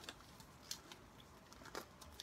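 Near silence, broken by a few faint ticks and crinkles as trading cards and foil pack wrappers are handled.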